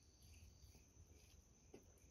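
Near silence: a faint steady high thin tone, with a few faint clicks of chewing as a chicken drumstick is eaten by hand.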